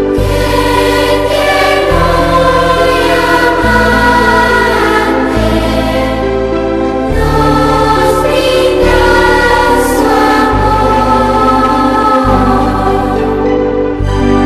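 A choir singing slow sacred music, held chords changing about every two seconds.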